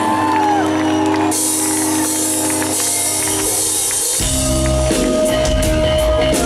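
Live rock band beginning a song: a held keyboard chord rings out, then about four seconds in the bass and drums come in and the full band plays.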